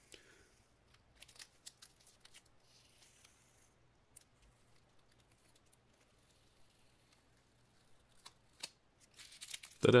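Blue painter's tape being peeled off a cast resin piece: faint crackles and small clicks, with a short tearing rasp about three seconds in.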